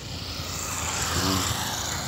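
A small motorcycle passing close by, its engine and tyre noise swelling into a rising rush.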